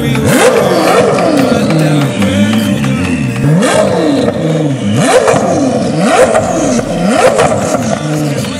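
Koenigsegg Jesko's twin-turbo V8 being revved in several sharp blips, each quick rise in pitch followed by a slower fall as the revs drop.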